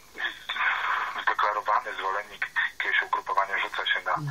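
Continuous speech over a telephone line, thin and cut off in the treble as on a radio phone-in.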